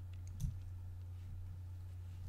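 A single computer mouse click about half a second in, over a steady low hum.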